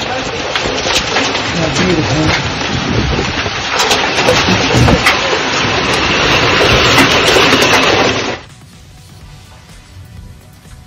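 Loud, dense rush of a heavy storm downpour of rain and hail, with scattered sharp cracks, cutting off suddenly about eight seconds in.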